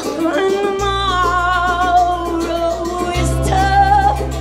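Live rock band: a woman sings long, wavering held notes with no clear words over electric bass, electric guitar and drums with cymbals. The bass moves to a new note about a second in and again near three seconds in.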